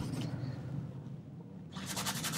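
Faint room tone, then near the end a bristle brush starts scrubbing oil paint across the canvas in rapid, rasping strokes.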